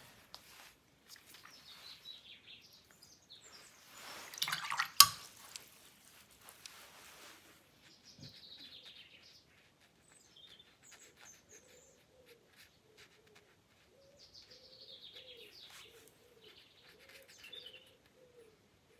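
A bird singing outside in short falling phrases, repeated several times. About four to five seconds in comes a brief, louder rustling burst that ends in a sharp tap.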